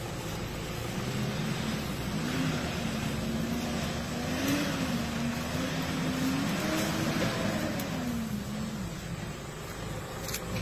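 Mitsubishi Triton pickup truck's engine running as it pulls away, its pitch rising and falling with the throttle and dropping off near the end as it moves away.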